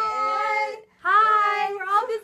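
Voices calling out in two long, drawn-out, sing-song notes, with a short break about a second in.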